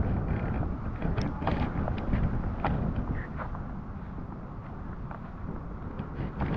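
Wind buffeting the camera's microphone outdoors: an uneven low rumble that eases somewhat in the second half.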